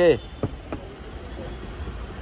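Steady low rumble of background traffic, with two short faint clicks about half a second and three-quarters of a second in.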